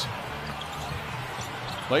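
Basketball court game sounds: a ball being dribbled on the hardwood floor over a steady hum of piped-in arena crowd noise.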